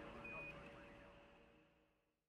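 Faint radio-channel hiss and hum fading out to silence, with one short high beep about a quarter second in: the Quindar tone that marks the end of a NASA Mission Control transmission.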